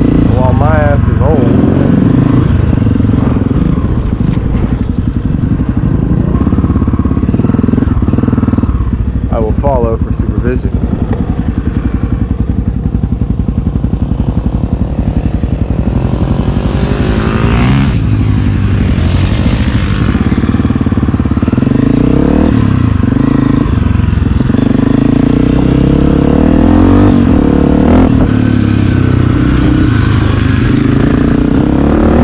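Honda CRF250F dirt bike's single-cylinder four-stroke engine being ridden around a motocross track, revving up and falling back repeatedly through throttle and gear changes.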